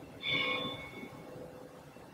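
A bell struck once, a quarter second in, ringing with several clear tones and fading out over about a second.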